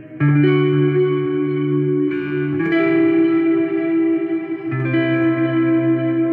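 Squier Affinity Jazzmaster electric guitar played through an amp: a slow run of about four chords, each struck and left to ring for one to two seconds.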